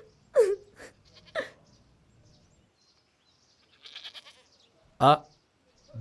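Sheep bleating briefly, two short calls in the first second and a half.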